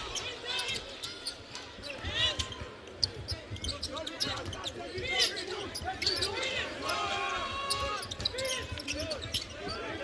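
Live college basketball court sound: the ball dribbled on a hardwood floor and many short, high sneaker squeaks as players cut, over the low murmur of the arena crowd.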